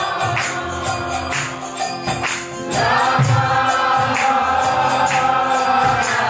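Group kirtan: a roomful of people chanting together to a steady beat of hand clapping and tambourine jingles. The singing thins out briefly, then swells back in about three seconds in.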